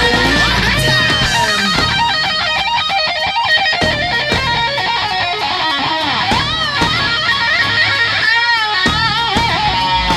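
Electric guitar solo through a DigiTech RP350 multi-effects unit: fast runs of single notes with bent, wavering notes about six and a half and eight and a half seconds in, played over a rock backing track.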